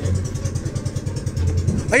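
A small boat's engine running steadily, a rapid, even low chugging.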